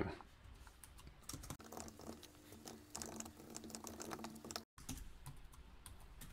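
Faint typing on a computer keyboard: a run of quick, irregular keystrokes as a line of code is typed.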